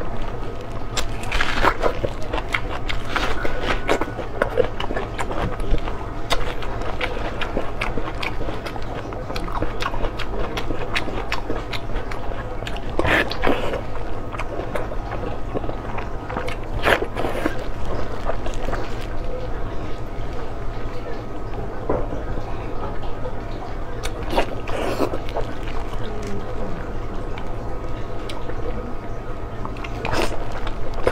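Close-up eating sounds: biting and chewing pork belly wrapped in leafy greens, with scattered short crunchy clicks over a steady low hum.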